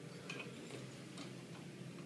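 A few faint, light clicks from an athlete handling a plate-loaded loading pin, over a steady low room hum.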